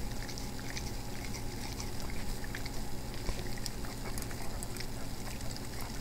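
A yellow Labrador licking whipped cream off metal mixer beaters: a run of small, irregular wet smacks and clicks of tongue and mouth on the metal. A faint steady low hum lies underneath.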